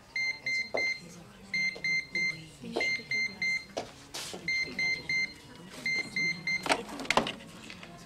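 Electronic telephone ringing: short high beeps in threes, repeating about every second and a half. Scattered clicks and knocks fall between the rings, and near the end the handset is lifted with a clatter.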